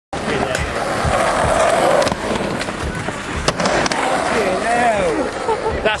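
Skateboard wheels rolling, with sharp clacks of the board about two seconds in and again around three and a half seconds. A voice calls out near the end.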